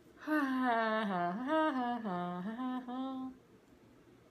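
A woman humming a short, wandering tune for about three seconds, its pitch stepping up and down.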